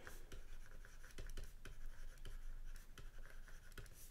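Faint scratching and tapping of a stylus on a drawing tablet as a short phrase is handwritten, with small irregular ticks from the pen strokes.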